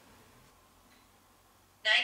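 Quiet room tone, then a sudden loud sharp sound just before the end.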